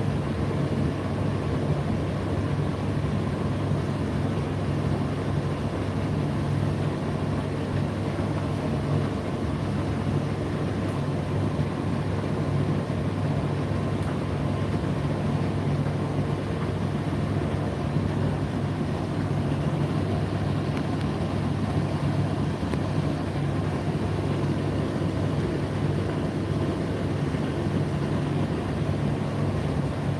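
Indesit IDC8T3 8 kg condenser tumble dryer running mid-cycle: a steady low hum from its motor and fan with the drum turning, unchanging throughout.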